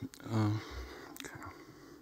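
A man's brief hesitant 'uh' into a microphone, then quiet room tone with a soft low thump and a single faint click.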